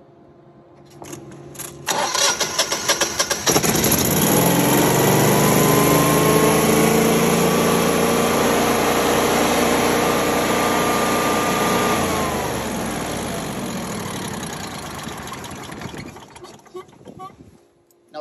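Generac air-cooled standby generator engine cranking on its starter for about a second and a half, then catching and running up to speed and holding steady: a normal start with the fuel supply restored after an 1100 overcrank fault. About two-thirds of the way through its pitch drops and the sound fades away over the last few seconds.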